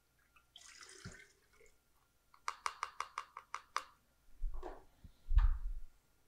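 Herbal tincture trickling briefly from a glass jar through a metal measuring cup and funnel. Then a quick run of about nine light taps, and two heavier thumps near the end, the second the loudest, as the funnel and jars are handled and set down on the tiled counter.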